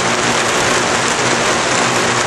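Steady rain, with water spilling off the front edge of a rain gutter instead of draining into its downspout.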